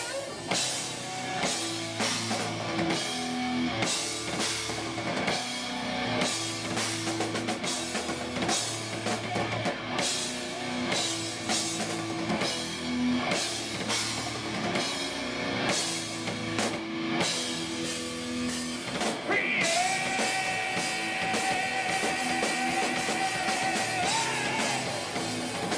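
Live rock band playing with electric guitars, bass guitar and drum kit driving a steady beat. With about four seconds left the singer comes in with one long held high note.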